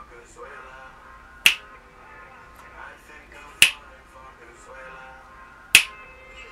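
Three loud finger snaps, evenly spaced about two seconds apart, keeping time over quieter background music.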